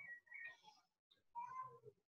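Faint meowing of a cat: a short, wavering high call at the start, then a longer meow that falls in pitch about a second and a half in.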